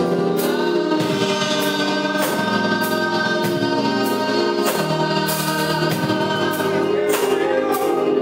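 Small gospel choir of women's and a man's voices singing together in held chords.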